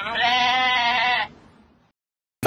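A single drawn-out, wavering bleat lasting just over a second, which stops suddenly.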